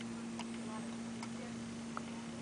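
A clock ticking steadily, a little under once a second, over a steady low hum.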